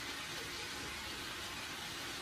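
Vegetables sizzling steadily in a frying pan on the hob, an even hiss with no separate knocks.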